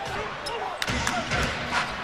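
Televised NBA game sound: arena crowd noise with a basketball bouncing on the hardwood court, one sharp hit a little under a second in and a run of dull thuds after it.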